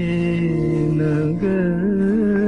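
A male voice sings one long held note in a vintage Hindi film song. The note steps up in pitch about two-thirds of the way in and wavers slightly after the step.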